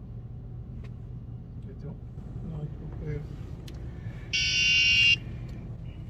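Electronic buzzer on a fall-detection device sounding one steady, loud beep of just under a second, about four seconds in, as the device raises its alert and starts sending its message.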